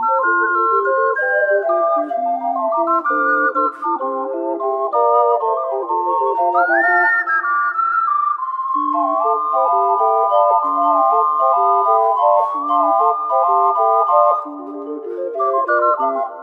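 An ocarina quintet (soprano F, alto C, two alto F and bass C ocarinas) playing a grooving piece with jazzy harmonies, several parts moving together in chords. About six and a half seconds in, one part slides up to a high held note, and the music briefly drops in loudness near the end.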